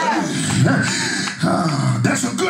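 A deep man's voice making long, wordless sounds that slide up and down in pitch.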